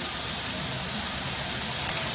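Music over an arena's sound system, with steady crowd noise underneath during a stoppage before a faceoff.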